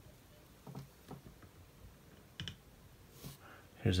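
Light plastic clicks and taps from a removable tooth and the jaw of an anatomical mandible model being handled as a tooth is pulled from its socket; a handful of separate clicks, two close together about two and a half seconds in.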